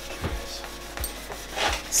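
Cloth rubbing along the frets and fingerboard of a Gibson J45 acoustic guitar, wiping off fretboard oil, with a few faint soft knocks.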